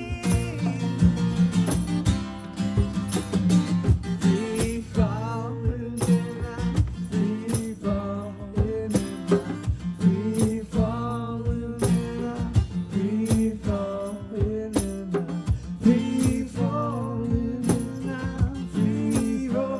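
Live band music: an acoustic guitar strummed over hand drums keeping a steady, even beat, in an instrumental passage.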